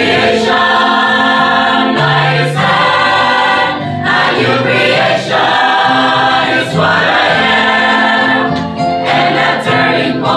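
Mixed church choir of men and women singing a gospel hymn together, holding long sustained notes over a steady low accompaniment.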